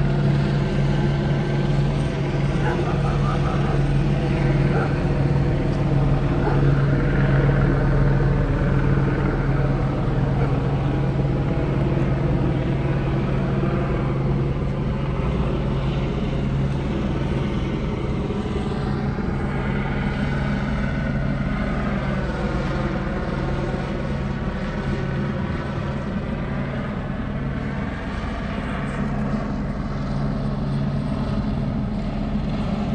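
Police helicopter circling overhead: a steady drone of engine and rotor whose pitch shifts as it moves past, about two-thirds of the way in.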